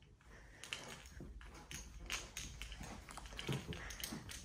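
Faint footsteps on carpet with rustling and handling noise from a hand-held phone, an uneven run of soft ticks and scuffs that grows a little louder as the walker moves along.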